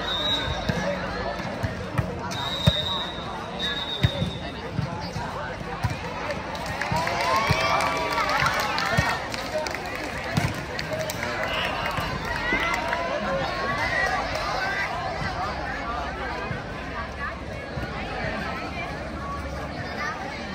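A volleyball being struck by hands during a rally: a few sharp slaps in the first few seconds. Underneath runs the chatter and shouting of spectators and players, which swells in the middle.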